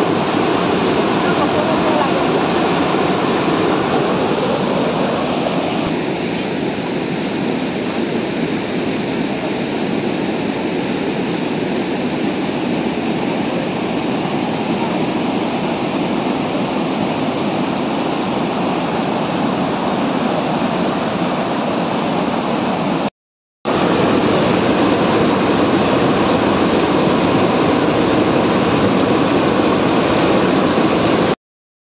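Muddy floodwater pouring through a breached river embankment and across a road, a loud, steady rush of water. The sound drops out for about half a second around two-thirds of the way through.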